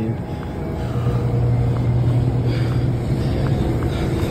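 A steady low hum sets in about a second in and holds, over a faint noisy background with a few light ticks.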